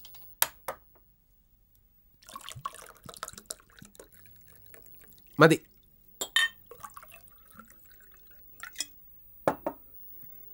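A drink poured from a glass bottle into a drinking glass, the liquid splashing in patches, with sharp clinks of glass against glass. One short spoken word is heard about halfway through.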